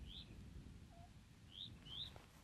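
Faint bird chirps: three short, high, rising notes, one near the start and two close together near the end, over a quiet outdoor background.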